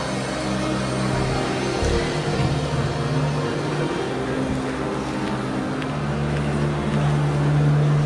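A large congregation praying aloud all at once, many voices blending into a steady mass of sound, over soft sustained keyboard chords.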